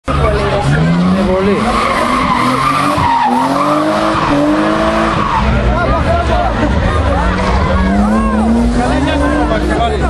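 A drift car's engine revving hard in rising pulls, its pitch dropping and climbing again twice, with tyres squealing as the car slides through the corner.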